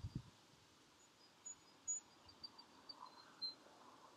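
Near silence outdoors, with faint, high, short chirps of small birds scattered through the middle.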